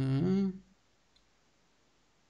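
A man's voice holding a drawn-out word for the first half-second or so, then near silence with one faint click just over a second in.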